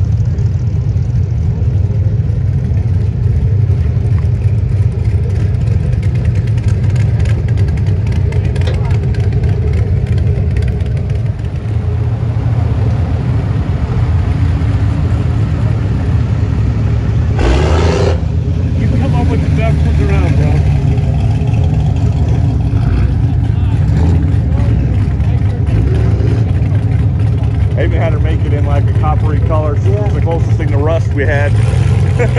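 Old hot rod and classic truck engines running at low speed in a steady low rumble, with a short loud sound near the middle. Crowd voices come in near the end.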